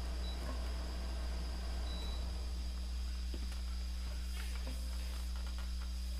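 Steady low electrical hum from a switched-on guitar amplifier, with faint clicks of the guitar being handled in the last couple of seconds.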